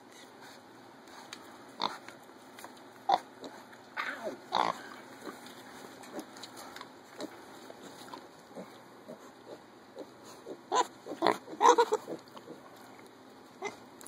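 Mini pigs grunting in short, scattered sounds, with a cluster of several grunts near the end.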